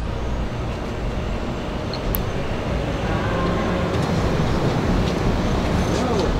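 Steady outdoor street ambience: a low rumble of distant traffic, with a faint sharp click about two seconds in.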